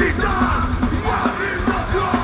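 Live hard rock band playing loud, with the vocalist shouting lyrics into a microphone over guitars, bass and drums.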